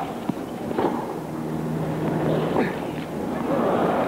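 A tennis rally in a stadium: a sharp pop of racket on ball about a third of a second in, over crowd noise with short scattered voices.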